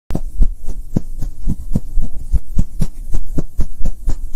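Loud, rhythmic deep thumps from an animated logo intro's sound effect, about four a second.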